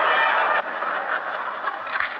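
Nightclub audience laughing loudly at a punchline. The laughter is cut off abruptly about half a second in, leaving a fainter murmur of scattered laughter.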